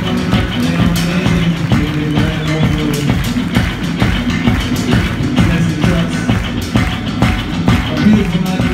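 Live rock band playing loud: a drum kit with regular strikes, electric bass and electric guitar, heard up close from behind the drums on stage.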